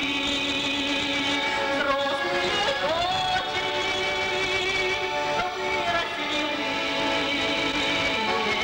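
A woman singing into a stage microphone with instrumental accompaniment, sliding up into a held note about three seconds in.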